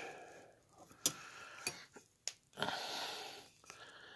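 Handling noise as a knife is picked up off the table: a few light clicks about one, one and a half and two and a quarter seconds in, then a breathy rustle lasting about a second.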